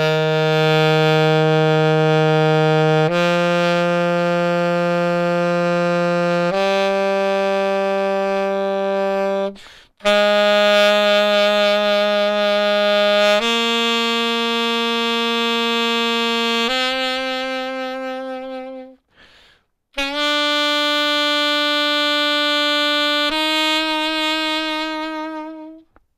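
Saxophone playing a C major scale upward in slow whole notes: eight long held notes stepping up from low C to the C above, with a breath break after the third and sixth notes.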